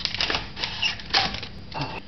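Instant film being pulled by hand out through the rollers of a home-made pinhole Polaroid camera, which starts the print developing: four short noisy strokes about half a second apart.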